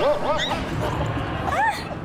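Short high-pitched yelping cries: a quick run of them at the start, then a few more about a second and a half in.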